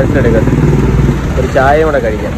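Voices talking over a steady, low engine rumble from vehicles on the street.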